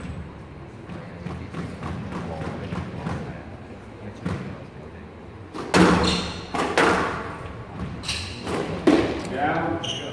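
Squash rally: the ball smacked by racquets and hitting the court walls, with sharp impacts about a second apart in the second half, the loudest near six and nine seconds in.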